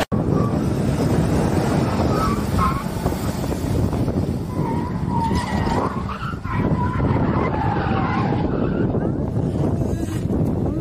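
An SUV driven hard over loose desert dirt: engine running under load with tyres skidding and sliding, a steady rough noise throughout. Faint wavering whines come and go above it.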